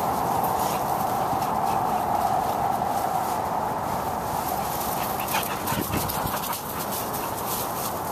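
Pit bull–type dogs playing rough together, with dog vocal noises and paws scuffling through wood-chip mulch, rustling and clicking most busily in the second half. A steady drone runs underneath.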